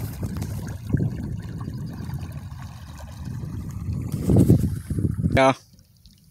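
Wind rumbling unevenly on the microphone over open water, mixed with water lapping. It cuts off suddenly near the end.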